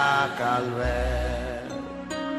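French-language Christian hymn with instrumental backing: a held sung note fades out within the first half second, and a deep sustained bass note comes in just under a second in.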